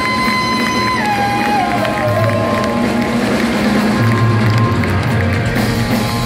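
Live rock band playing loudly, heard from the audience: a long held high note slides down in steps about a second in, over a steady low bass line.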